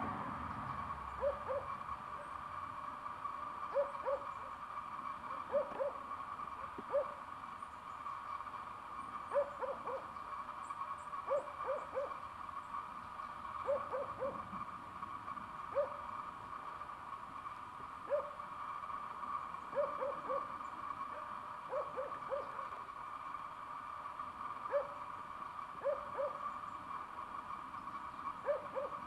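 A bird calling in short, low hooting notes, singly or in quick runs of two or three, repeated every second or two. Behind them runs a steady, higher-pitched hum.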